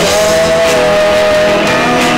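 Live rock band playing, with an electric guitar holding one long lead note that it bends slightly up and down in pitch over the rest of the band.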